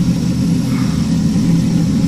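Steady low rumble of a reef aquarium sump heard up close: water splashing down into the sump while its submersible pumps run.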